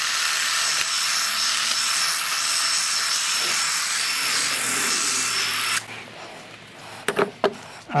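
Milwaukee M12 cordless hedge trimmer running steadily, its blades cutting into a rose bush, which it struggles with. It cuts off about six seconds in, followed by a few short knocks.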